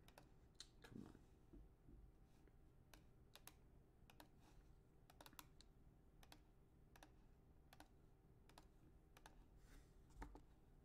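Faint, irregular clicking of a computer keyboard and mouse, roughly one or two clicks a second.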